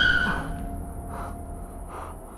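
Car tyres squealing in a skid, two steady high tones that die away about half a second in. After that it is much quieter, with faint short chirps about once a second.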